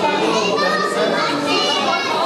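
Children's high voices calling and chattering over the general talk of a crowd of guests.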